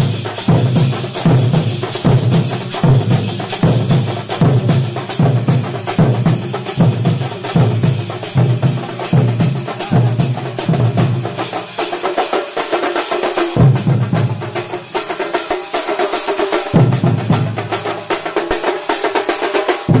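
A thambolam percussion ensemble playing: large stick-beaten drums pound a steady rhythm under rapid smaller drums and clashing brass hand cymbals. In the second half the deep drum beat drops out briefly twice and comes back, while the higher drums and cymbals keep playing.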